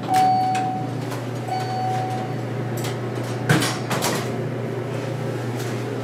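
Elevator car: two electronic beeps of the same pitch, about a second and a half apart, then the sliding doors closing with a short thump about three and a half seconds in, over a steady low hum.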